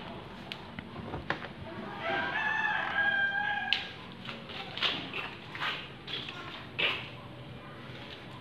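A rooster crows once, about two seconds in: a single call of about a second and a half that ends abruptly.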